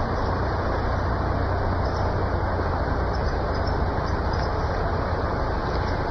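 Steady low hum under an even hiss, with no change in level.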